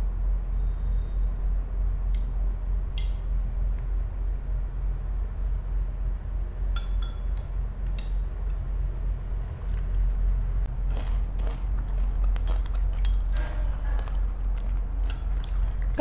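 A metal spoon and chopsticks clink against a ceramic bowl a few times, each clink ringing briefly. From about ten seconds in come close-miked chewing and eating sounds, many small quick clicks, of crispy fried turmeric rice and shredded chicken. A steady low hum runs underneath.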